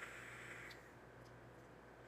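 Faint hiss of a long draw on a vape mod, with a light click at the start, fading to near silence while the vapour is held.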